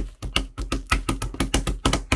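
Slime being worked and pressed between the hands, giving a quick, irregular run of sharp clicks and pops, about seven or eight a second.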